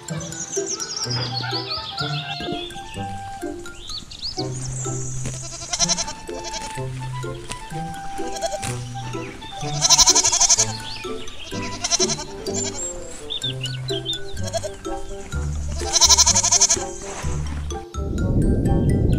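Goat bleating twice, first about ten seconds in and again near the end, over background music.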